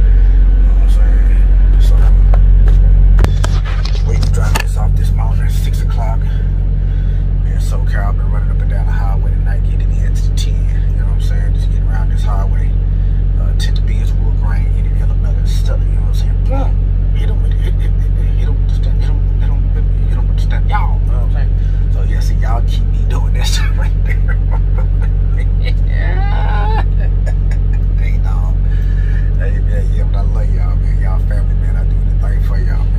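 A truck engine idling with a steady low rumble under music and an indistinct voice. The rumble drops in level abruptly about three seconds in.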